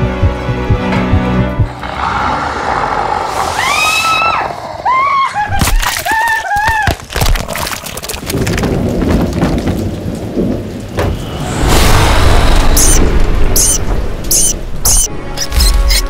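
Horror-film soundtrack mix: a short music cue gives way to a loud rumbling, noisy stretch. About four seconds in comes a run of short rising-and-falling shrieks with several sharp hits, and a series of high chirping blips follows near the end.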